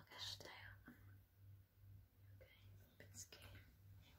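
Near silence: faint whispered voices over a faint low hum.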